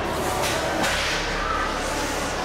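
Two short, sharp hissing bursts, about half a second in and again a moment later, over a steady low hum.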